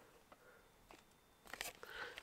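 Near silence, then a few faint clicks and crinkles near the end: a cardboard collector's box being handled and opened.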